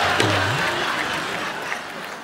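Studio audience applause with band music under it, fading away toward the end.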